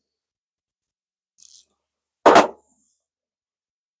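A pipe smoker lighting and drawing on his briar pipe: a faint short hiss about a second and a half in, then one short, loud puff of breath as he blows out smoke, a little after two seconds.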